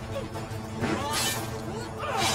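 TV drama soundtrack: music, with a sudden noisy crash about a second in.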